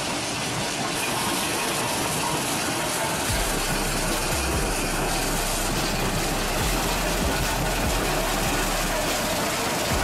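Stone-crushing plant running: belt conveyor and crusher machinery make a steady, dense noise, and crushed stone pours off the end of a conveyor onto a pile. A low hum comes in about three seconds in.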